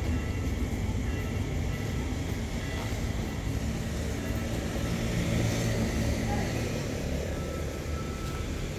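Low, steady rumble of a passenger train pulling out and moving away down the track, easing off slightly near the end, with people's voices on the platform.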